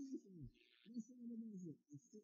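A man's low wordless voice, hummed or crooned, its pitch bending and sliding, with one deep downward slide about half a second in.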